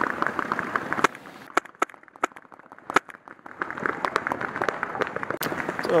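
Paintball markers firing on the field: a crackle of sharp pops that thins to a few scattered shots about a second and a half in, then picks up again near the end.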